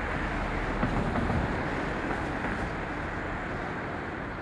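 Steady outdoor background rumble and hiss, swelling slightly about a second in.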